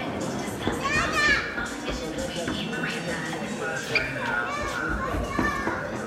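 Children's voices and general chatter from people standing around, with music playing in the background.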